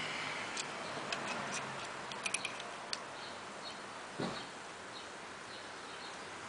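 Scattered light metallic clicks and taps as a braided-hose AN fitting and an aluminium adjustable wrench are handled, with a duller thump about four seconds in, over a steady background hiss.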